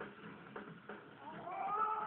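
Fight-scene soundtrack of a martial arts film played back through a television speaker: a few short knocks, then from about halfway a drawn-out voice rising in pitch.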